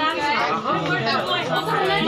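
Several people talking at once: overlapping chatter of a small indoor gathering.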